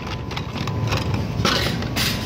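Handling noise: a few light knocks and clacks, as of plastic toys and the camera being moved about, over a steady low hum.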